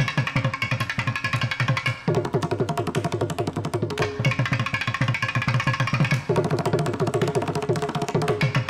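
Carnatic concert percussion: mridangam and thavil playing fast, dense strokes in a continuous stream, the sound changing character every couple of seconds.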